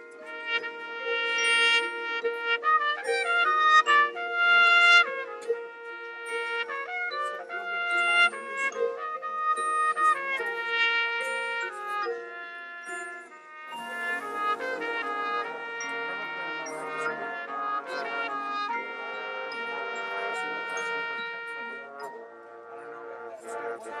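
High school marching band playing, with brass instruments to the fore. It is loudest in the opening few seconds, then settles into softer held chords about halfway through.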